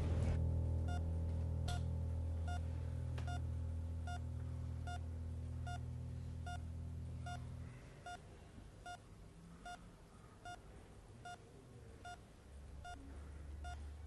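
Hospital bedside patient monitor beeping in an even rhythm, a little over one beep a second. Low sustained music plays under it for the first half and fades out.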